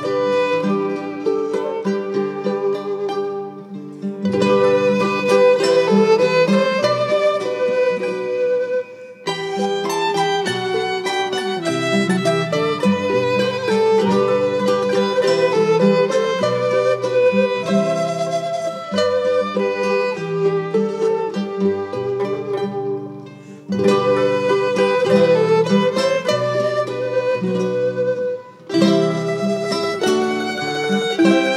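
Irish folk band music, an instrumental passage with fiddle leading over plucked strings. The music drops back briefly between phrases four times.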